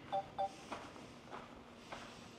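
Short electronic beeps from a drone remote controller, two quick ones near the start, each a pair of steady tones. Behind them come faint footsteps about every half second.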